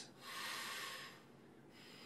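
A man's deliberate deep breath: one soft rush of air lasting about a second, then fading away.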